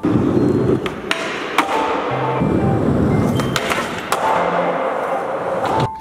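Skateboard wheels rolling hard on a skatepark floor, with several sharp clacks of the board about a second in and again near the middle.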